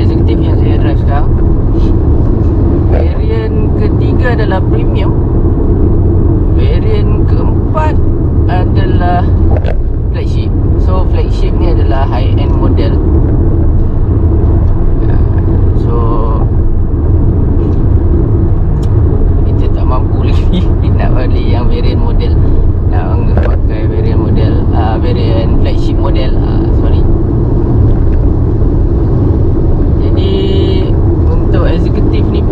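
Steady low rumble of road and engine noise inside the cabin of a Proton X50 being driven, with a voice talking on and off over it.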